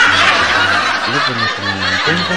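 Chuckling laughter over a dense, steady wash of sound that sets in just before and runs on throughout, with a low voice sounding briefly about a second in.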